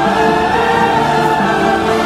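Music with a choir singing long held chords.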